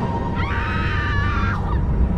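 A woman's high-pitched scream lasting about a second, starting shortly in, over a low rumbling horror-film score.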